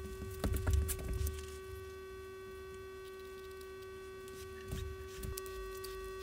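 Steady electrical hum with a few constant tones, broken by light knocks and handling sounds about half a second to a second in and again around five seconds in.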